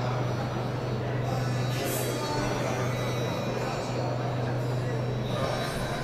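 Open-air stadium ambience: indistinct voices and background music, with a steady low hum running throughout.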